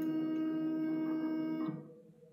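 Stepper motors of a large 3D-printer-based tactile display whining at a steady pitch as the printhead moves, cutting off suddenly near the end.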